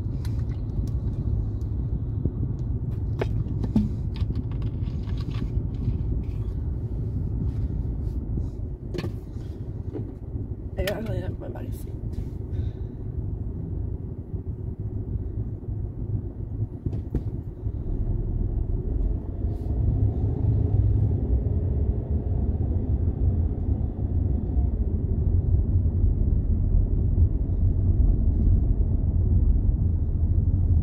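Low engine and road rumble heard inside a car's cabin, steady while the car waits in traffic. It grows louder from about halfway through as the car pulls away and picks up speed. A few short clicks and brief small noises come in the first dozen seconds.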